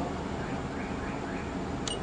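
Steady background hiss and room noise, with one short, sharp high click just before the end.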